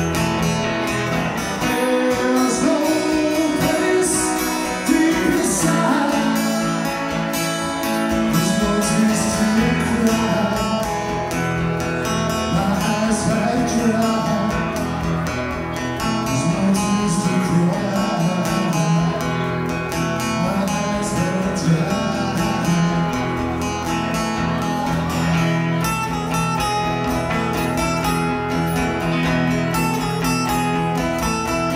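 Two acoustic guitars played together with a man singing over them, a live song performance.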